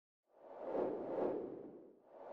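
Whoosh sound effect for an animated logo transition: a soft noise swell that rises about half a second in, peaks twice and fades away near the end.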